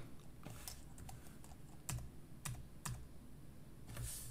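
Computer keyboard being typed on: about six faint, unevenly spaced keystrokes entering a short search term.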